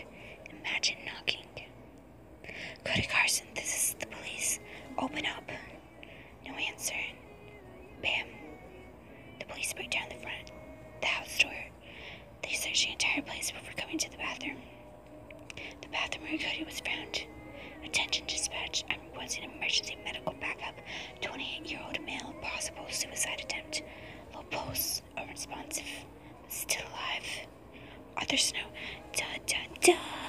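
A person whispering continuously, with faint music underneath.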